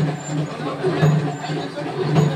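Batasa (sugar-drop) making machine running: a steady low motor hum that swells in a regular cycle about once a second, with indistinct voices over it.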